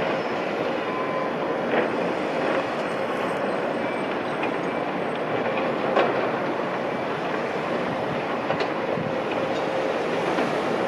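Heavy construction machinery at work: the diesel engines of a hydraulic excavator and manoeuvring dump trucks run steadily, with a couple of sharp metallic clanks.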